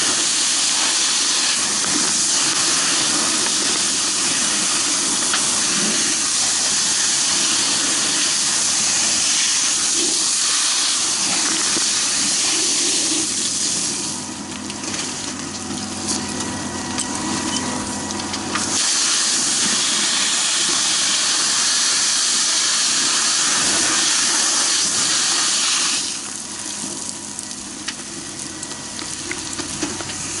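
Water jet from a firefighter's hose nozzle spraying into a burning house, a steady loud hiss mixed with steam. It turns quieter twice: from about 14 to 19 seconds, and again from about 26 seconds on.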